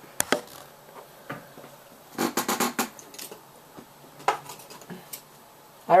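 Hands handling an iPhone 5 retail box and its wrapping: a couple of sharp clicks at the start, a quick run of rustling clicks a little past two seconds in, and a few single taps after.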